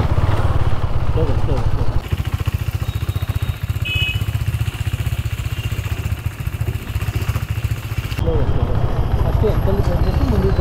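Motorcycle engine running with a steady low rumble as the bike is ridden slowly.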